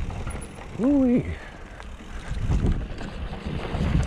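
Mountain bike rolling downhill over loose rock and gravel, with rattling and ratchet-like clicking from the bike. About a second in, a short hummed voice sound from the rider rises and falls in pitch and is the loudest thing.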